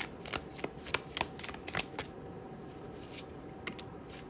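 Tarot cards of The Unfolding Path Tarot deck shuffled and flicked through by hand: a quick run of light card clicks for about the first two seconds, then a lull, and a couple of soft clicks near the end as a card is drawn and laid on the tray.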